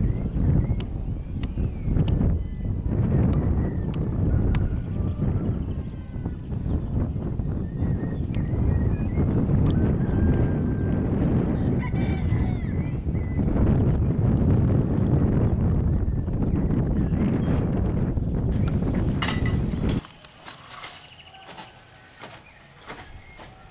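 Wind buffeting the microphone with heavy low rumbling, a short distant animal call about halfway through. The rumble cuts off suddenly near the end.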